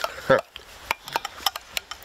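Metal spoon clicking and scraping in a steel camp mug, a run of light sharp clicks.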